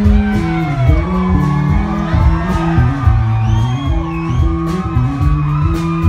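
Live country rock band playing loud, heard from the crowd: electric guitar lines bending over a bass line that steps between held notes, with a steady drum beat.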